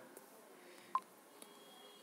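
Faint room tone with one short electronic beep about a second in and a faint tick shortly after, such as a phone's touch-feedback tone.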